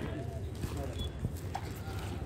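Low rumble of wind and handling on the microphone, with scattered knocks and faint voices.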